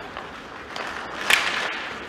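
Ice hockey play on a rink: skates scraping on the ice and sticks clacking, with one sharp, loud crack a little past halfway.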